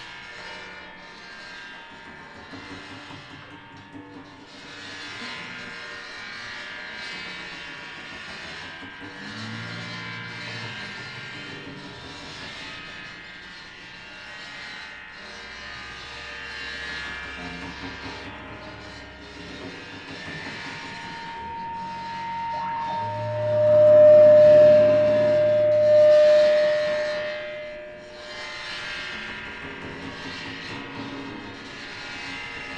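Free-improvised experimental music from a trio of electric guitar, percussion played with sticks, and objects worked on the floor: a dense, droning noise texture with sustained tones. About two-thirds of the way through, a loud steady tone comes in over a low hum and holds for several seconds before falling away.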